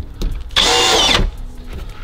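Cordless drill with a countersink bit run in one short burst of about half a second, its motor whine dropping in pitch as it stops, cutting the carpet lining away from a clip hole in the van's metal panel.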